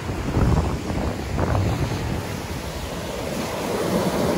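Pacific Ocean surf breaking and washing up a sandy beach, with wind gusting on the microphone.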